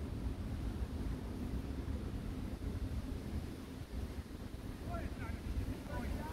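Wind buffeting the phone's microphone: a low rumble that rises and falls in gusts. A faint distant voice comes in near the end.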